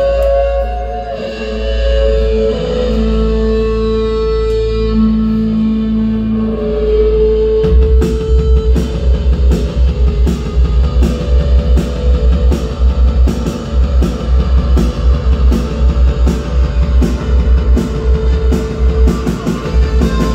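Live rock band playing the instrumental opening of a song: held guitar and keyboard tones over a low drone, then about eight seconds in the drums and bass come in with a fast, steady beat.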